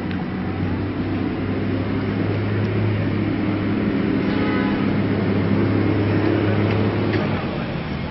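A motor vehicle's engine running with a steady low hum that fades out about seven seconds in.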